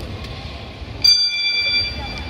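A bell-like chime from the hall's loudspeakers sounds suddenly about a second in and rings on, over a faint murmur in the hall.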